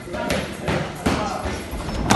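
Boxing sparring in a ring: three sharp thuds of gloved punches and feet on the canvas within about a second, with voices around.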